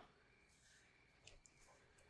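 Near silence: room tone, with a few faint clicks a little past the middle.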